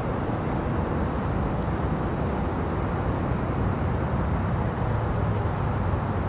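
Steady low outdoor rumble with a few faint ticks.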